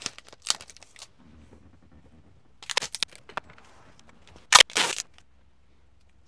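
Clear adhesive tape (Scotch tape) being pulled off the roll and torn with the teeth, in several short bursts. The loudest comes about four and a half seconds in.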